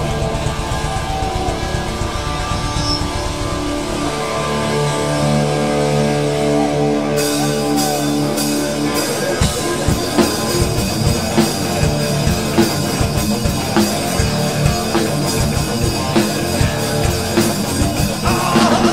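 Hard rock band playing live with electric guitar, bass and drum kit, no vocals. Guitar and bass hold sustained chords at first; cymbals come in about seven seconds in, and the full drum kit joins at about nine seconds with a steady driving beat.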